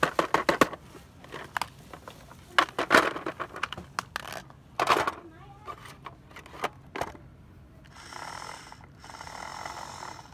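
A plastic toy cash register being handled: a string of short clicks and knocks through most of the first seven seconds, then a faint steady sound near the end.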